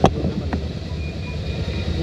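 Steady low background rumble, with a sharp crack right at the start and a fainter one about half a second later.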